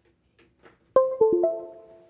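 A computer's USB device-connected chime as the scanner's receiver stick is plugged in: four quick, ringing notes about a second in, stepping down three times and then up once, fading out. A few faint handling clicks come before it.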